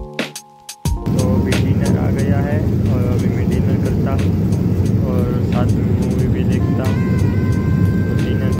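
Background music for about the first second, then the steady, loud cabin noise of a jet airliner in flight, with indistinct voices talking over it.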